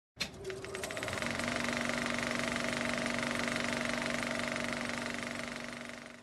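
Film projector starting up and running: a rapid, steady mechanical clatter over a hum that rises and settles in pitch during the first second as the motor comes up to speed, then fades out near the end.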